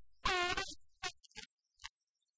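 A short, horn-like blast about a quarter second in, fading over about half a second, followed by a few short clicks, on a film soundtrack.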